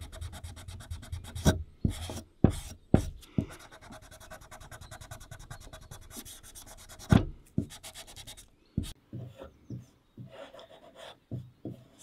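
Scouring pad scrubbed rapidly back and forth along the oiled steel blade of a pair of secateurs, a fast rasping rub, working resin and dirt off the blade. A few louder knocks come through it. The scrubbing fades to fainter, scattered rubbing for the last few seconds.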